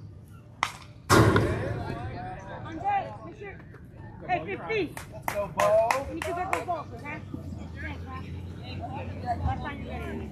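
A baseball bat cracks against a pitch. About half a second later comes a much louder crash close by, which rings on briefly. Players and spectators then shout, with several sharp claps in the middle.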